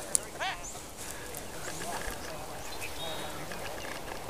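A single sharp click, then a short animal call with arching pitch just after it, over a faint outdoor background.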